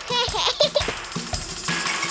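Cartoon sound effects over children's background music: a quick run of short knocks and clicks, with a brief gliding pitched sound near the start.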